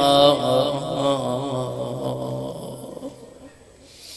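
A man chanting an Arabic supplication into a microphone, drawing out the end of a phrase on a wavering melodic line that fades away about three seconds in.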